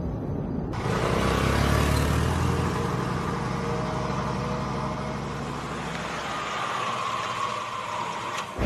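A Suzuki sedan driving along a street: steady engine and tyre noise that comes in abruptly about a second in, with a heavier low rumble for the first couple of seconds that then eases off.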